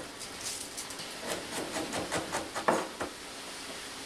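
Chef's knife tapping irregularly on a cutting board as garlic is minced, stopping about three seconds in. Ground beef sizzles faintly in a frying pan underneath.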